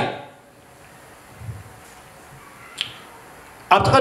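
A man speaking into a microphone breaks off, leaving a pause of quiet room tone with a faint click about one and a half seconds in and a sharper single click just before three seconds; his speech starts again near the end.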